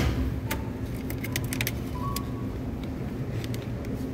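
Steady low supermarket background hum, with a thump at the start and a cluster of light clicks and rattles about a second in as a plastic strawberry clamshell is handled.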